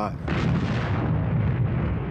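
Explosion of a fireball bursting out of a skyscraper: a deep boom about a quarter second in that rumbles on steadily.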